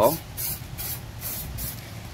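Aerosol spray-paint can spraying black paint onto a steel angle bracket in short hissing bursts, a little over two a second.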